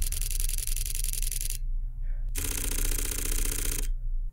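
Fujifilm X-H2S and then X-H2 mechanical shutters firing 15-frames-per-second bursts, each about a second and a half long with a short gap between them. The X-H2S's burst is slightly quieter than the X-H2's.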